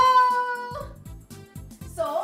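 A long, high-pitched, drawn-out 'hello' called out in greeting by women's voices, held on one pitch and ending a little under a second in. It is sung out over background music with a steady beat, which carries on after the call stops.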